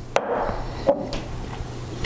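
Two light knocks of a glass perfume bottle being handled: one about a quarter-second in, and a second, with a brief ring, about a second in, as the bottle is lifted off the table and its cap pulled off.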